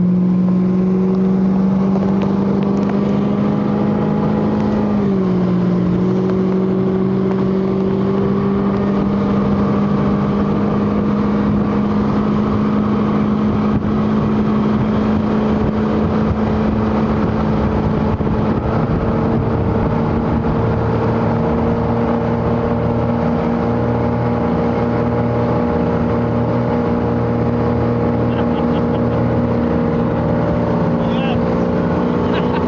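Motorboat engine running steadily at towing speed over the rush of its wake. The engine note drops slightly about five seconds in and rises a little again past the middle.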